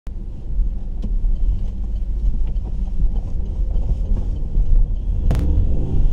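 Low, steady rumble of a car heard from inside the cabin. About five seconds in there is a sharp click, after which the sound changes.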